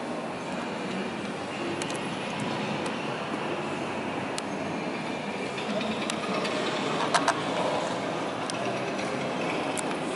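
Steady background noise of a large indoor exhibition hall, with a few sharp clicks or knocks, the loudest a quick pair about seven seconds in.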